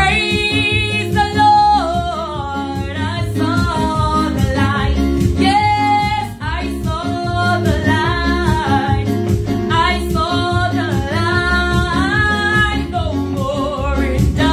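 A woman singing a Pentecostal gospel song in full voice, the melody sliding and wavering between notes, over her own electronic keyboard accompaniment with a steady bass pattern.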